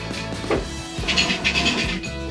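Background music with steady held notes, and a short scratchy rasp about a second in.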